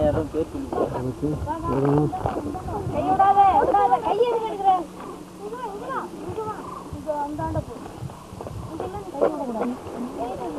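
A group of voices shouting and calling out over one another, with no clear words, loudest about three to five seconds in.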